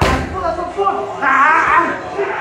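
A kick smacking hard into a Thai pad once at the very start, followed by voices.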